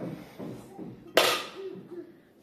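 Clear plastic bread bag rustling and crinkling as it is handled, with one sharp, loud crackle a little over a second in.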